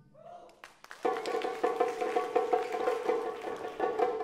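Taiko drums: after a brief lull with a few soft taps, rapid light drum strokes with a ringing pitch start about a second in and run on steadily.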